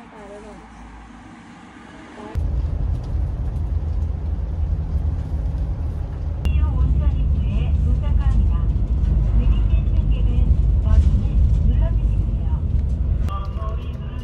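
Inside a moving bus: a steady, loud rumble of engine and tyres on the road, starting suddenly about two seconds in. Before that there is only quieter background sound.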